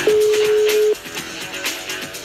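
A telephone ringback tone: one steady single-pitch beep lasting about a second, the ring of an outgoing call to a listener's phone, heard over background music with a beat that continues after it.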